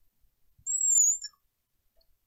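A single high-pitched squeak of about half a second, rising slightly and then falling, from a marker dragged across lightboard glass.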